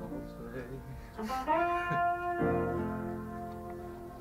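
Session band instruments playing loose, held notes and chords between takes, not a song. A new note comes in about a second in, and a fuller chord about two and a half seconds in.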